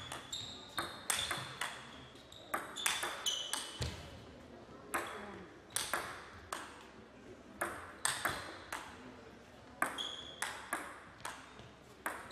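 Table tennis ball striking rackets and the table: an irregular series of sharp clicks, each with a short high ringing ping, a few tenths of a second to about a second apart.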